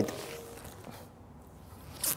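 Faint rustling of clothing and feet shifting on a training mat as a person pulls up from sitting and turns into a crouched stance, fading within the first half-second into quiet room tone.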